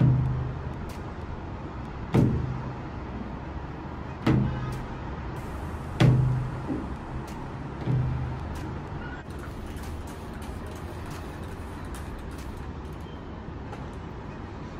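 Window-cleaning squeegee pushed against a large glass pane, knocking the glass into a low, booming thump five times, about every two seconds, over the first eight seconds; after that only a steady low background hum.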